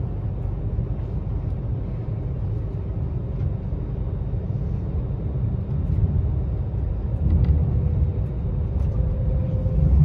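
Steady rumble of a moving passenger train heard from inside the carriage, growing a little louder about halfway through, with a faint whine rising in pitch near the end.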